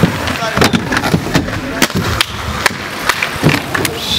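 Inline skates rolling on concrete, with a string of sharp clacks and knocks from the wheels and frames. Voices murmur faintly in the background.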